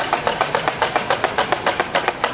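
Hand-held wooden clappers shaken in a rapid, even clatter of dry clacks, about six to seven a second: the Holy Week rattles that sound in a procession in place of bells.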